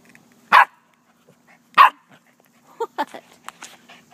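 Puppy barking twice, two short sharp barks about a second and a quarter apart.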